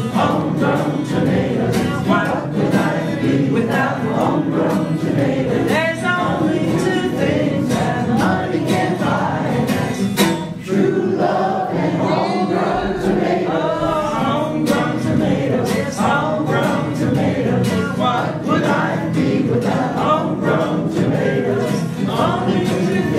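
Music: several voices singing together, choir-like, over instrumental accompaniment.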